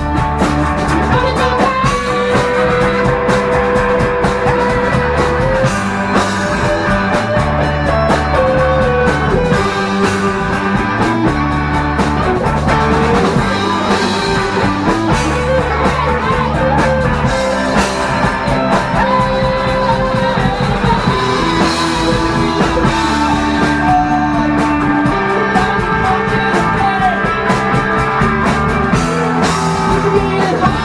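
Rock band playing live in a rehearsal room: electric guitars and bass guitar over a drum kit with steady cymbal and drum hits, and held, bending melody notes on top.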